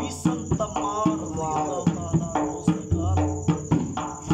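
A dhol (double-headed barrel drum) beaten in a steady rhythm of deep bass booms and sharp slaps, with a voice singing a qasida over it. Crickets chirr steadily in the background.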